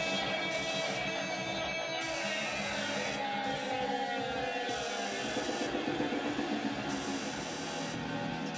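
Free-improvised live music of electric guitar and electronics: a dense, steady layering of sustained tones. About halfway through, several pitches slide slowly downward.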